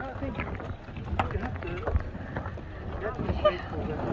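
Faint voices talking over footsteps on a floating plastic dock, with irregular light knocks and low thumps.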